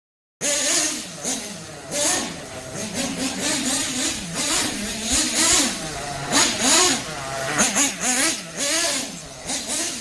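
Kyosho FO-XX GP nitro (glow) engine running and revving as the RC truck is driven, its pitch rising and falling again and again as the throttle is worked. The engine is in break-in, on its second tank of fuel. It cuts in abruptly about half a second in.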